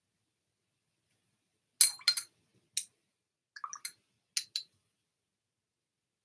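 Watercolour brush clinking against a glass water jar, a quick series of sharp clinks between about two and five seconds in.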